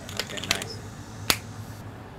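Three short sharp clicks from handling a multi-bit 8-in-1 screwdriver, its shaft and bits being pulled and snapped back into the handle; the loudest click comes just past a second in.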